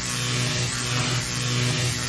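A steady electric buzzing hum with a hiss over it, slightly pulsing: the sound effect of a closing production-company logo.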